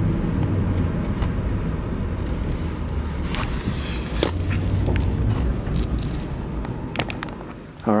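Car cabin noise while driving: a steady low rumble of engine and tyres heard from inside the car, with a few scattered clicks.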